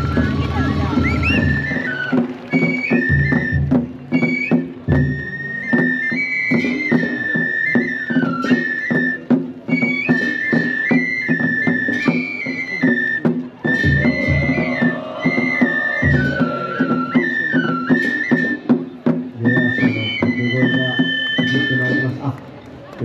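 Japanese festival hayashi: a high transverse bamboo flute playing a stepped melody over low, irregular drum beats.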